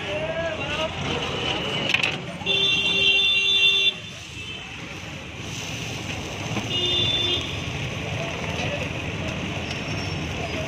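A vehicle horn honks for about a second and a half, then gives a shorter honk a few seconds later, over steady street traffic noise.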